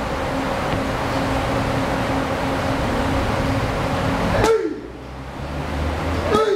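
Steady rushing noise with a low hum, typical of large electric wall fans in an open gym. About four and a half seconds in, a sharp smack, followed by a short vocal call that falls in pitch.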